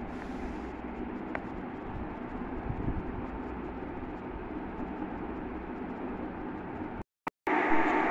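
Steady background noise without speech, an even hiss and hum that cuts out to silence briefly near the end.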